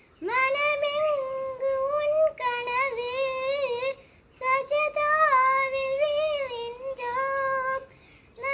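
A young girl singing a qaseeda, an Islamic devotional song, solo and unaccompanied, in long held notes that waver and bend. She pauses briefly for breath about four seconds in.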